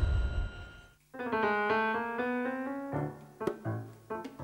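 The end of a TV show jingle fades out. About a second in, a Nord Electro 3 stage keyboard starts a single held chord in an electric-piano voice, which dies away near 3 s. Then short hand-drum strokes on bongos open the song's rhythm.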